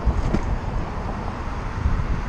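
Wind buffeting the microphone of a bike-mounted camera while riding, a steady low rumble, with road traffic going by.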